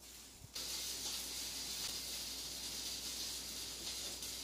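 A steady high hiss that starts abruptly about half a second in.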